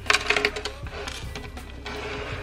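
Light metallic clinks of jewellery as a gold chain bracelet is lifted out of a drawer tray, a few of them in the first half-second, over soft background music.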